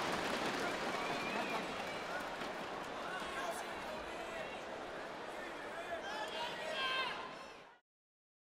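Crowd noise from a large indoor arena audience: a steady wash of chatter with scattered shouting voices. It slowly gets quieter and fades out shortly before the end.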